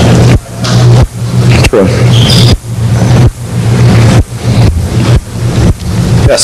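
A loud, steady low electrical hum on the recording, broken by brief dips about every second.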